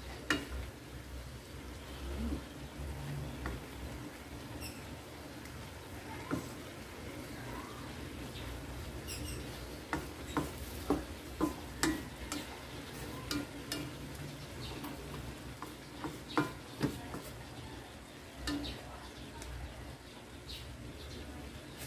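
Spatula stirring and tossing mung bean sprouts, cabbage and carrots in a non-stick wok over a soft sizzle. Scattered sharp taps of the spatula against the pan come throughout, most of them in the second half.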